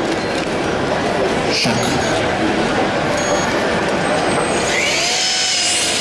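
Small line-follower robot's high-speed electric motors whining, rising steeply in pitch from about five seconds in as it starts its run, over steady crowd chatter.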